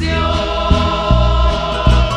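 Male vocal group holding a sung chord in harmony on a Spanish-language evangelical hymn, backed by acoustic guitars and bass notes that change a few times.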